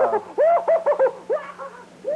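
High-pitched laughter in quick hooting bursts, about four a second, trailing off about one and a half seconds in.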